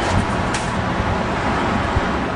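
Steady road traffic noise from a busy city street, with a short sharp click about a quarter of the way in.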